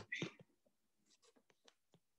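Stylus writing on a tablet screen: a sharp click and a short rustle at the start, then faint scattered ticks as the pen taps and strokes the glass.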